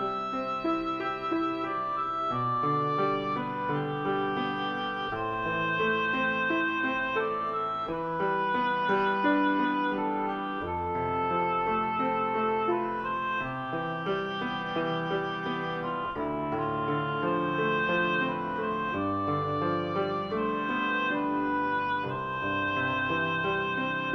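Improvised keyboard music on a red stage keyboard: a slow melody of long held notes that sustain without fading, over chords and bass notes that change every second or two.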